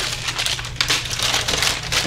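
Crinkling and rustling of sterile supply packaging, irregular crackles throughout, as a wrapped ChloraPrep prep applicator and a Bovie grounding pad are pulled from a plastic supply bin and handled.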